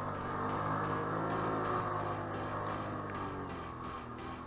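ATV engine under way, its pitch rising and then falling back across the middle, with background music.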